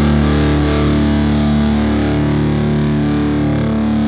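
Hardcore punk music: a distorted electric guitar chord is held and rings out steadily, with no drums.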